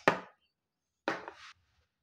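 A wooden chess piece set down on a wooden chessboard, giving one sharp knock about a second in.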